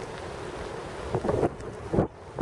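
Wind on the microphone: a steady noise with a few faint, brief sounds in the second half.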